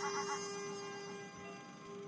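A synthetic text-to-speech voice drawing out a long wavering "waaaa" wail, which trails off about half a second in and leaves a steady held tone that fades away.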